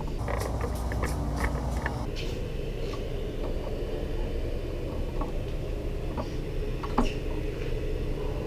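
Scattered light clicks and knocks of footsteps and objects being handled, the sharpest about seven seconds in, over a steady low hum.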